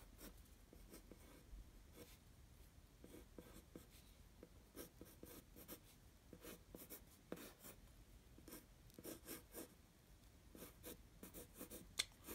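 Faint scratching of a yellow wooden pencil's graphite point on paper, in irregular runs of short, quick sketching strokes.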